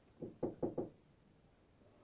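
Four faint, short taps in quick succession within the first second.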